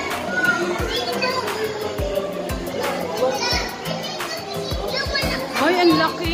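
Children's voices and chatter over background music with a beat.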